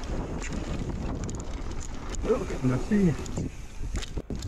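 Wind rushing over the camera microphone and the knobby tyres of a mountain bike rolling fast over a packed dirt trail, a steady rumbling noise. A brief bit of voice comes in about two to three seconds in.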